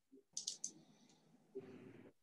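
A quick run of about four faint, sharp clicks, like small desk or computer clicks, about a third of a second in.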